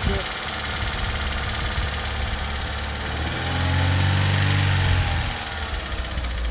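Vauxhall Corsa's engine idling steadily with jump leads connected, feeding a Dacia that has charging trouble. About three seconds in a louder engine sound swells for about two seconds, rising and then falling in pitch.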